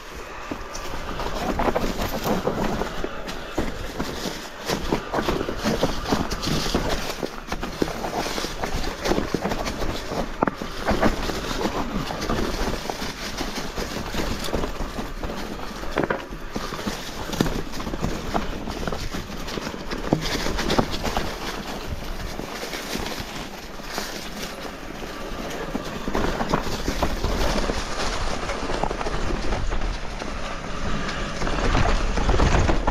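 Mountain bike riding down a rough trail: steady tyre and wind noise with frequent knocks and rattles from the bike.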